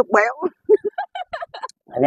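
A duck quacking: one drawn-out, falling quack, then a quick run of short, higher quacks about a second in.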